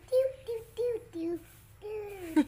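A young child's voice in a short sing-song of four brief notes, then a pause.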